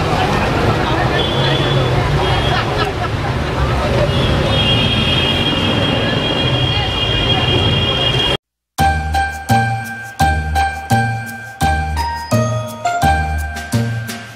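Onion fritters (piyaji) deep-frying in a kadai of hot oil: a steady sizzle under street traffic noise, with a steady high ringing tone joining in the second half. It cuts off suddenly about eight seconds in, and light jingle music with bell-like notes and a regular beat follows.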